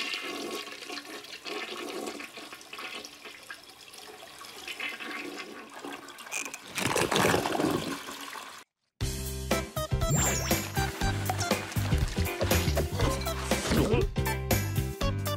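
Cartoon toilet flushing: a loud rushing swirl of water about seven seconds in, lasting under two seconds and cut off sharply. After a moment of silence, upbeat background music with a steady beat starts.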